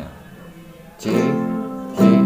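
Nylon-string guitar strummed about a second in, a C major chord ringing on.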